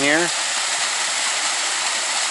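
Small waterfall spilling over rock into a pool, a steady rushing of water. The stream is running low after weeks without rain, so the falls are tame.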